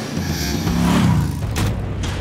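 Motorcycle engine revving, swelling and rising in pitch over the first second, then a sharp swoosh about one and a half seconds in.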